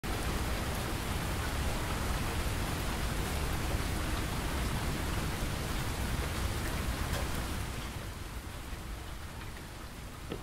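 Steady rain falling on puddled brick paving, growing quieter about eight seconds in.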